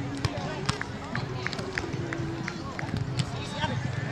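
Indistinct voices of players around the volleyball courts, with scattered sharp taps of volleyballs being struck in play.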